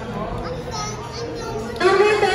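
Children's voices and speech at a restaurant table, with background music; a louder voice cuts in near the end.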